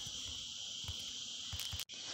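A low, steady high-pitched hiss in a pause between spoken sentences, cutting out for an instant near the end.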